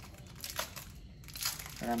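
Wrapping crinkling in two short bursts as a piece of old ceramic is handled.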